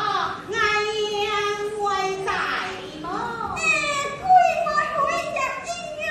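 A woman singing a Min opera (Fuzhou opera) passage in a high voice, with long held notes that slide up and down in pitch.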